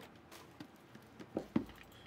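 Faint handling sounds of cardboard trading card boxes: a few light taps and knocks in the second half, otherwise quiet.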